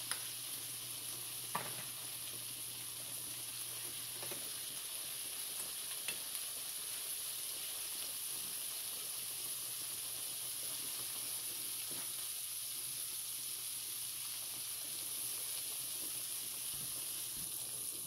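Sliced smoked sausage sizzling steadily in butter and grease in a nonstick skillet, with a few light clicks as a spoon and fork turn the slices against the pan.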